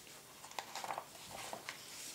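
Faint paper rustling and crackling as a page of a printed A4 instruction booklet is lifted and turned by hand, a quick cluster of rustles after about half a second.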